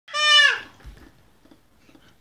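A young child's short, high-pitched bleating cry of about half a second, falling in pitch at the end: a disapproving noise, taken as the child already passing judgment on the food.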